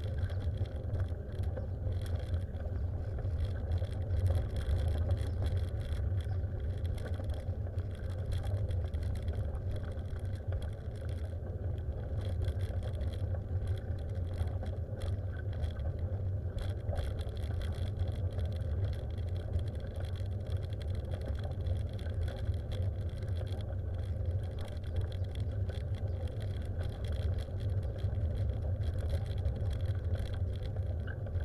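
Steady low rumble of a vehicle moving along a paved road, unchanging throughout with no clear engine revs.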